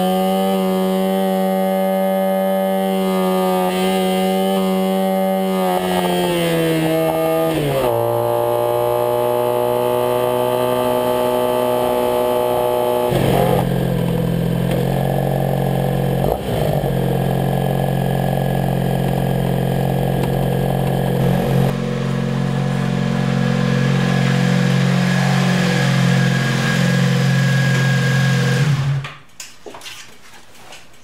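Honda Sabre V4 motorcycle engine under way on the road, heard from on board. The engine note climbs slowly, then drops sharply about 8 s in and changes again about 13 s in, as with gear changes. It cuts off just before the end.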